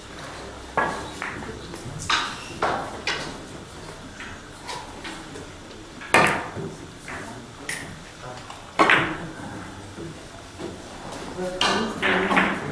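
Carom billiard balls clicking: a sharp click about six seconds in and another loud one near nine seconds as the shot is played and the balls collide, with fainter clicks scattered before and after.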